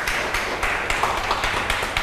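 An audience applauding: a dense patter of many hands clapping at once.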